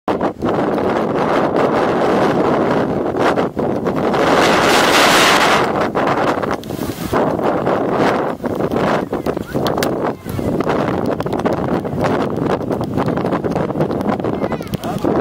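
Strong, gusty wind buffeting the microphone, loudest in a gust about four to six seconds in.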